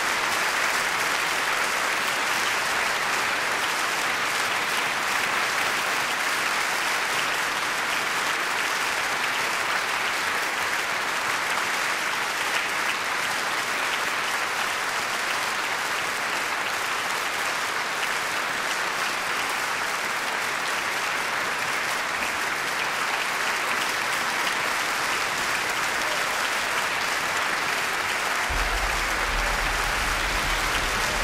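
Concert-hall audience applauding steadily.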